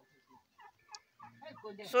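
Poultry calling: a run of short, quick notes, fairly quiet.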